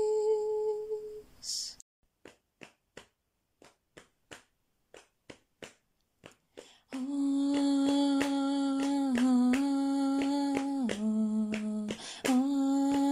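Unaccompanied vocal music: a held hummed note dies away in the first second and a half, followed by a run of sharp rhythmic clicks, two to three a second, with nothing else under them. From about seven seconds a woman hums long low notes over the continuing clicks, stepping down in pitch twice.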